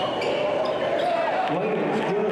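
Indoor basketball game sounds: a few sneaker squeaks and knocks of the ball on the hardwood, under a long wavering shout from a voice, with more voices in the last half second.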